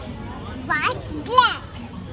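A young child's voice calling out twice in short, high-pitched exclamations, the second one louder.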